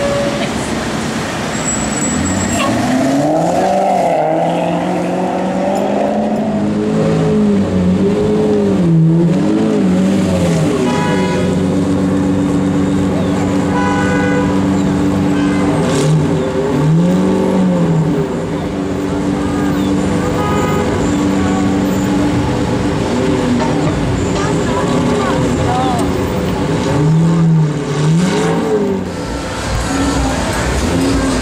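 Sports car engines in slow street traffic, idling and blipped by the throttle so the revs rise and fall several times. A car horn sounds briefly.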